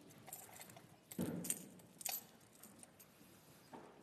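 Metal chains of a thurible clinking in several short jingles as it is swung, the loudest about a second in: the incensing of the Gospel book before it is read.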